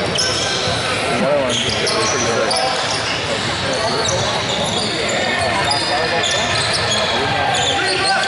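Basketball being dribbled on a wooden gym court, with short high sneaker squeaks from players moving, over the chatter and calls of spectators and players echoing in the hall.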